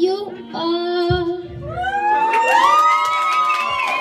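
A boy singing into a handheld microphone over a karaoke backing track, holding out the song's final note, which rises and is held for the last second and a half.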